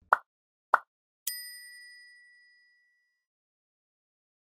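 End-screen animation sound effects: two short pops, then a single bright bell-like ding that rings out and fades over about a second and a half.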